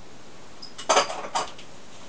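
Hard plastic suction cups for cupping therapy knocking together as they are handled: a quick double clack about a second in, then a second clack half a second later.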